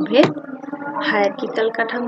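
A woman speaking, lecturing in Bengali.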